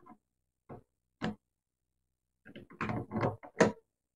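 Light clicks and rattles of a Lee Auto Drum powder measure being fitted by hand onto the powder-through expander die in a reloading press's die plate. Two single clicks come about half a second apart, then a quick cluster of clicks about two and a half seconds in.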